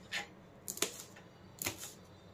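Kitchen knife slicing a green chilli on a plastic cutting board: sharp taps of the blade hitting the board, about five in two seconds, some in quick pairs.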